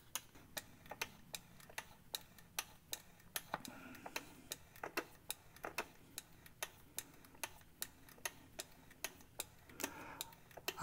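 Faint, uneven clicking, a few clicks a second, from a hand pump on a bottle of transfer case lubricant being worked to push fluid through a tube into the transfer case fill hole, over a low steady hum.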